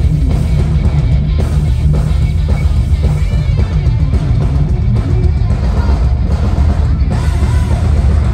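Live metal band playing loudly, with distorted electric guitars over drum kit and bass.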